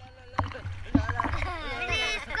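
Pool water sloshing against a GoPro held at the surface, with a low rumble and a couple of sharp splashes. High-pitched voices call out from about halfway through.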